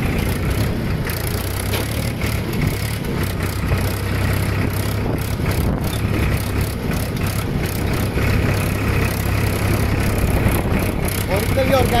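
Tractor's diesel engine running steadily with an even low drone while it pulls a rigid tined cultivator through hard soil.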